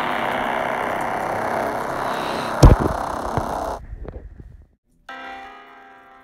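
A loud, rough noise lasting nearly four seconds, with one heavy thump partway through, cuts off abruptly. After a brief silence, soft bell-like music begins.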